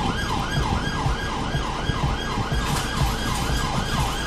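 Police car siren in a fast yelp, its pitch rising and falling several times a second without a break.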